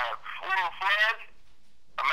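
Only speech: a voice talking with a telephone-like sound, then a short pause near the end.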